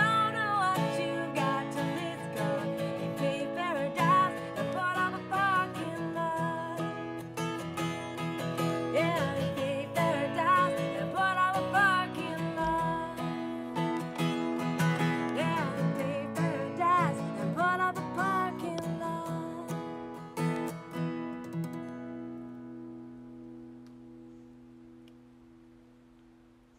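A woman singing over a strummed acoustic guitar; near the end the singing stops and the last chord rings out and fades away.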